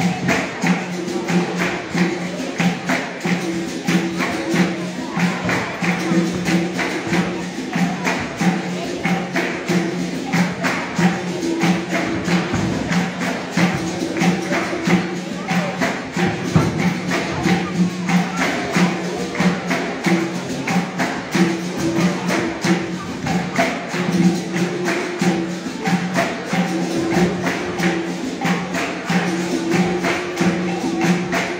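Capoeira bateria playing a steady, even rhythm: berimbaus sounding held low notes over the jingle of a pandeiro and the beat of an atabaque drum.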